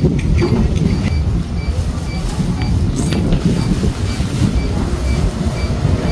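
Wind buffeting the microphone in a steady low rumble. A faint short high chirp repeats about twice a second behind it.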